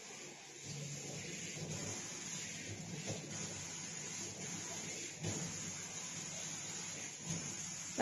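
Quiet room tone with a few faint, soft knocks spaced about two seconds apart.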